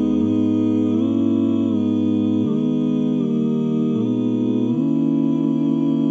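A cappella male voices in four-part harmony humming sustained 'hoo' chords, the chord changing about once a second.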